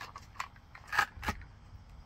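Three short clicks of hard plastic as the body shell of a small RC truck is worked loose and lifted off its chassis; the loudest click comes about a second in.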